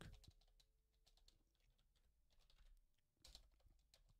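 Near silence with faint computer-keyboard typing and clicks, a slightly louder cluster of keystrokes a little past three seconds in.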